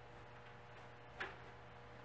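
One short, faint click about a second in, over a faint steady hum of room tone.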